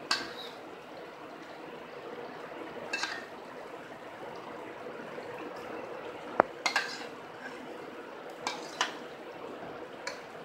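A steel ladle and a wooden spoon knocking and scraping against a metal cooking pot as yogurt is ladled into a thick curry and stirred: a handful of short sharp clicks, with one ringing knock about six seconds in, over a steady low hiss.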